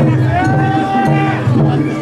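Japanese festival procession music: a repeating rhythm with a long held pitched note through the first half, over crowd voices.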